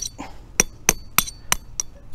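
A small 7-ounce hammer lightly tapping the wire stakes of a metal H-stand yard-sign stand: sharp metallic clinks at an even pace of about three a second. Repeated light taps drive the stand through rock in hard ground.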